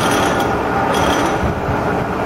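Sharp VH3 milling machine's table power feed driving the table along the X axis at rapid traverse, with the feed gearing and motor running steadily.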